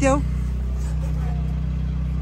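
Small motor scooter engine running steadily, a low even hum.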